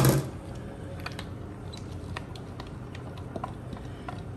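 A silicone spatula scraping and tapping against a small glass bowl as mayonnaise dressing is scraped into shredded cabbage for coleslaw: scattered light clicks and scrapes.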